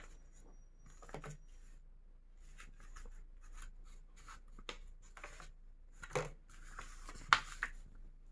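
Pages of a paper instruction booklet rustling and being turned by hand, in short scattered bursts, the loudest near the end.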